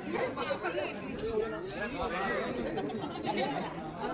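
Indistinct chatter of several people talking at once in the background, no single voice standing out.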